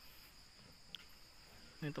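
Faint, steady high-pitched chirring of insects such as crickets, with a short voice near the end.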